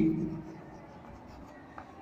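Chalk scratching faintly on a blackboard as words are written.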